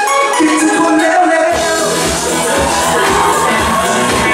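Live band music with a male lead singer, amplified through a PA. The low end is almost absent at first, then bass and drums come in about a second and a half in.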